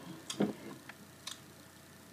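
Several faint, separate clicks and soft taps close to the microphone, the loudest about half a second in, over quiet room tone.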